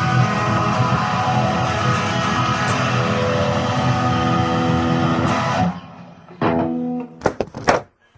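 Electric guitar playing improvised riffs that stop short about two-thirds of the way through, followed by one brief chord and then a few sharp knocks.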